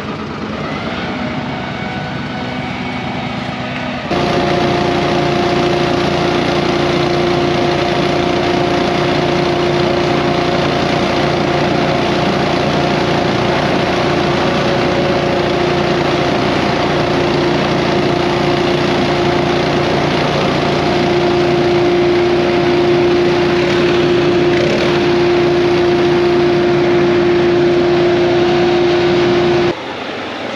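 Small gasoline engine of lawn equipment running steadily at high speed with a steady whine. It is quieter for the first few seconds, then much louder from about four seconds in, and cuts off sharply near the end.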